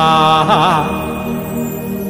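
Male voice chanting a Sanskrit mantra, holding the closing syllable of a verse for under a second with a brief waver, then trailing off over a steady musical drone.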